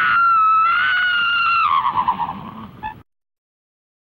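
A long, high-pitched cry held on one slightly wavering pitch. It then falls with a quaver and cuts off suddenly about three seconds in.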